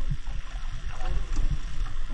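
Wet nylon gill net being hauled over the side of a small wooden fishing boat, with a steady low rumble of wind on the microphone.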